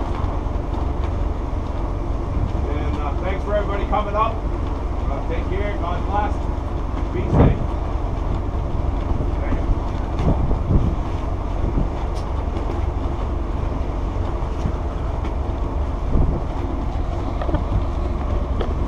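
Steady low rumble and wind noise on the open deck of a cargo ship under way, with faint, indistinct voices a few seconds in and a single thump a little before halfway.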